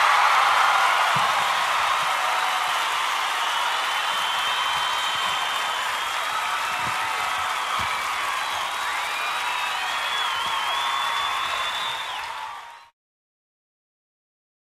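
Crowd clapping and cheering, with whistles rising and falling through it, steady until it cuts off abruptly near the end.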